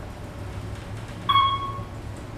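Single electronic ding from an Otis elevator car's floor signal, sounding about a second in as the car reaches floor 3 and fading out within half a second, over the low steady hum of the traction elevator car travelling down.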